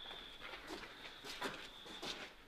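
Irregular shuffling and rustling from soldiers moving in chemical protective suits, over a thin steady high-pitched tone.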